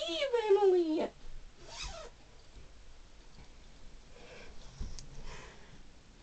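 A girl's voice off-camera, drawn out and sliding down in pitch for about a second. Then faint rustling and a soft thump follow as she moves around in the fuzzy costume.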